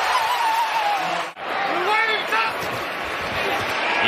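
Broadcast stadium crowd noise at a football game, a steady din with one long drawn-out shout. It breaks off abruptly a little over a second in and resumes as another stadium's crowd noise, with brief voice fragments.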